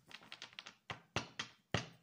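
Light, irregular tapping: a run of small clicks, with four or five sharper taps in the second half.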